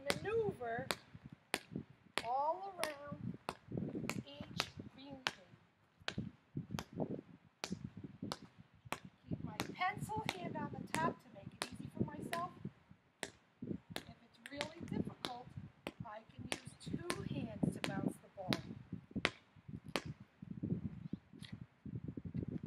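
Basketball being dribbled on asphalt: sharp, evenly spaced bounces, about two a second, kept up steadily while the dribbler walks.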